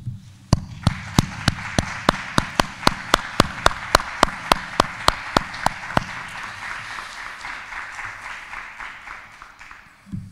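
Audience applause, with one person's hand claps close to the microphone standing out at about three and a half claps a second. The close claps stop about six seconds in, and the applause fades out near the end.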